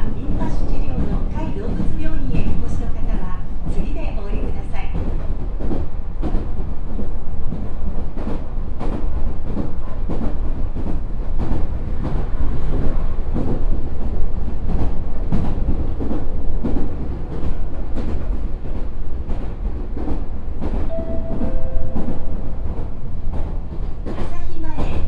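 Meitetsu 4000 series electric train running at speed, heard from inside the car: a steady, loud rumble of wheels on rail with rapid clicks and knocks from the track.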